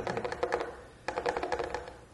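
Rapid clicking of keys being typed on a keyboard, in two quick runs of about a second each with a short break between.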